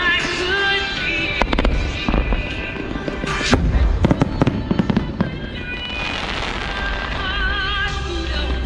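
Aerial firework shells bursting: a few bangs about one and a half seconds in, a louder one around three and a half seconds, then a quick run of reports between four and five seconds. Music plays throughout.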